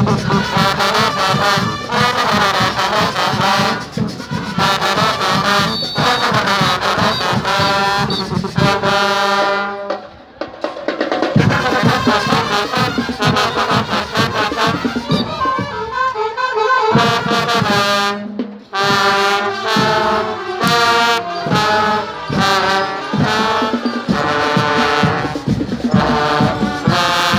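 Marching band playing, led by trombones with saxophones, over a driving beat; the music breaks off briefly about ten seconds in and again just before nineteen seconds, then picks up again.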